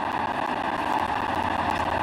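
Large audience applauding, a steady even patter of many hands clapping.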